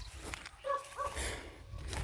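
A dog gives two short barks in quick succession, about two-thirds of a second in.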